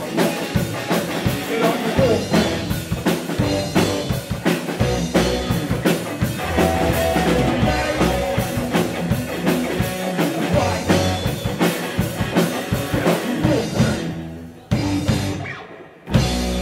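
Live rock band playing: drum kit, distorted electric guitars and bass under a singer's vocals. About two seconds before the end the band stops dead, and one brief hit rings away into a short break.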